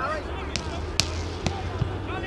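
Distant shouting from players across a football pitch, with three sharp knocks about half a second apart, the middle one loudest, over a steady low rumble.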